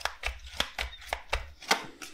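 Tarot deck being shuffled by hand: a quick run of crisp card clicks, about five or six a second, with one louder snap near the end.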